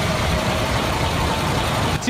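Heavy tow truck's engine idling steadily, a constant rumble with hiss.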